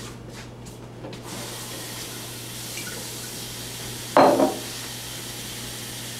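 Kitchen tap running into a sink as dishes are washed, the water starting about a second in. One short, louder sound comes a little after four seconds, over a steady low hum.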